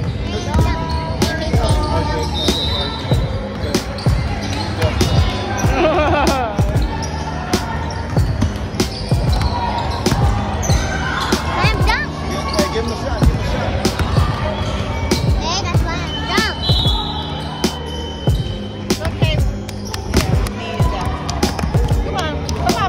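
A basketball dribbled on a hardwood gym floor, bouncing repeatedly at an uneven pace.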